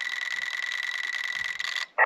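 Elecraft KX2 transceiver with its internal KXAT2 auto-tuner running a tune cycle: a steady high tone with hiss from the radio, cutting off abruptly just before the end as the tuner reaches a 1:1 match.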